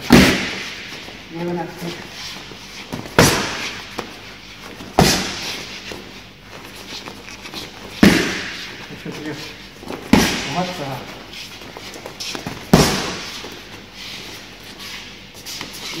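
Boxing gloves striking focus mitts: about six sharp leather smacks a few seconds apart, each with a brief echo.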